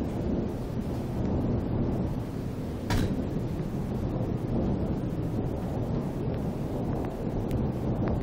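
Thunder rolling continuously as a steady low rumble during a thunderstorm, with a single sharp click about three seconds in.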